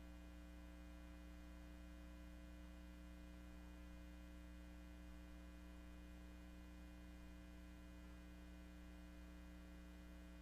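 Near silence, with only a faint, steady electrical mains hum.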